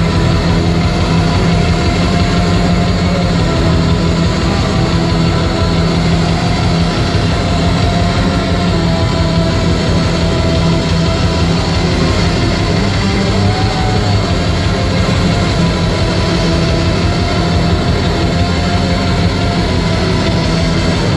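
Live industrial black metal: loud distorted guitars over a steady, dense drum-machine beat, played at full volume, starting about a second before this stretch and running without a break.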